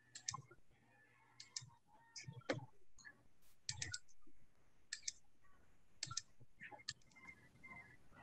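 Faint, irregular clicks of a computer mouse, several in quick pairs, as files and windows are opened on a computer.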